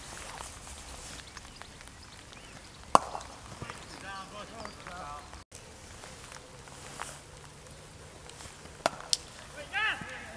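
Quiet open-air cricket field with distant fielders' voices, broken by a few sharp clicks; a sharp click about a second from the end is the bat meeting the ball, and a shout follows as the batsmen set off for a run.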